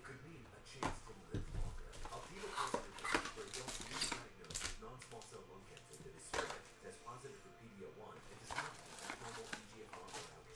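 Hands cutting open a cardboard trading-card box and sliding out and stacking its foil-wrapped packs: a run of irregular scrapes, crinkles and light knocks.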